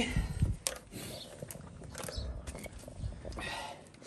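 Quiet handling noises: a few low knocks at the start, scattered faint clicks and a short rustle near the end, as a portable jump starter and its clamp cables are picked up and moved.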